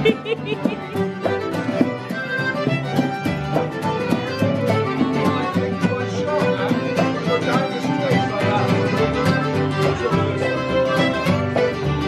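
A traditional folk tune played live on fiddle and strummed acoustic guitar, with a steady strummed rhythm.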